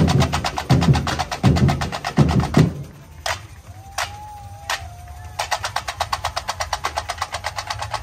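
Samba batucada drum section. For the first two and a half seconds the big bass drums and the higher drums play the full groove together. The bass drums then drop out for a break with a few scattered hits and a brief thin sliding tone, and after that the higher drums play fast, even strokes on their own, about ten a second.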